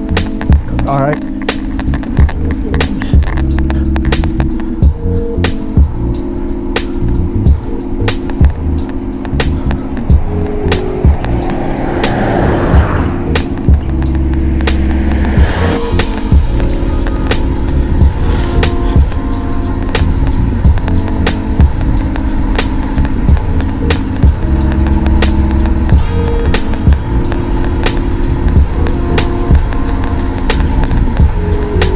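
Background music: an instrumental beat with a steady drum pattern and a repeating bass line.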